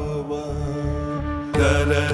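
Hindustani classical-style film song between sung lines: a held note over a steady drone and bass, with the accompaniment coming in louder about one and a half seconds in.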